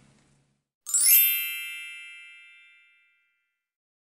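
A single bright chime about a second in, a cluster of high ringing tones that fade away over about two seconds.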